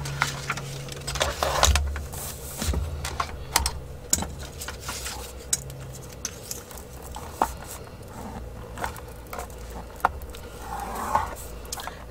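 Paper being slid and handled on a plastic scoring board, with irregular light clicks, taps and scrapes, over a steady low hum.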